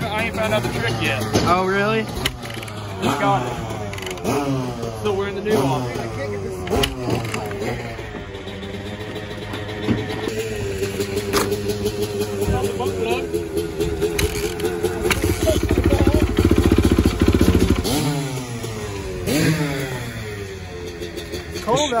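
Motocross dirt bike engines: quick rising and falling revs in the first half, then an engine holding a steady idle, and a louder, harder-running stretch a few seconds before the end.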